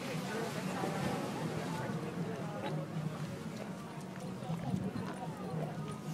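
Light, scattered knocks of stone against stone as rocks are handled on a balanced stack, over indistinct low voices and a steady low hum.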